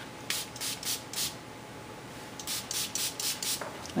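A small finger-pump spray bottle misting plain water onto paper: a quick run of about four short sprays, then about six more in the second half.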